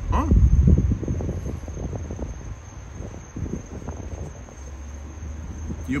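A steady high insect trill, typical of crickets, runs under everything. A low rumble in the first second is the loudest sound, followed by a run of soft low taps and scuffs.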